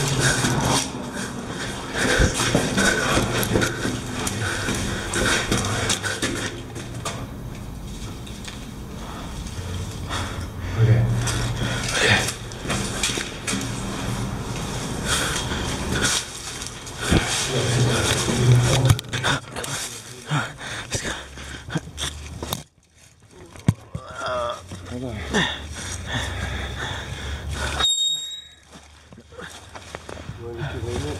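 Handheld camera jostling and scraping as people hurry along a cave passage on foot, with indistinct, unintelligible voices throughout.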